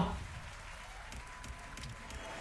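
Faint sound effects of Pragmatic Play's Aztec Powernudge online video slot as the reels spin in a free-spins round: a soft rattling haze with a few light clicks and a faint held tone.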